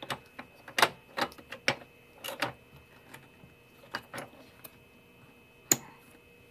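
Irregular clicks and knocks of a chrome metal bottom plate and plastic housing parts being handled and fitted onto the underside of a Sanitaire commercial upright vacuum. About a dozen sharp taps, unevenly spaced, with a loud one about a second in and another near the end.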